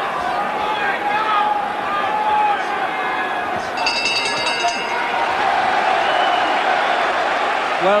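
Boxing arena crowd noise throughout. About four seconds in, the ring bell is struck once, ringing for about a second to end the round. The crowd then swells into cheering and applause.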